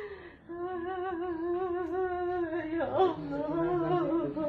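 A person's voice holding one long, wavering note, with a quick slide in pitch about three seconds in before it carries on.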